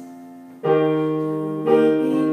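Yamaha digital piano playing sustained chords: a chord fades out, a new one is struck just over half a second in, and another near the end.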